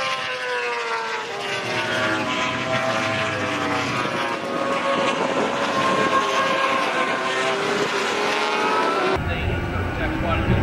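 A pack of 600 cc racing motorcycles at high revs, several engine notes overlapping, their pitches falling as they go by and rising again as the riders accelerate. The sound changes abruptly to a lower rumble near the end.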